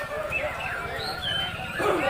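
Many caged songbirds, white-rumped shamas among them, singing at once in overlapping whistles and chirps, over the chatter of a crowd.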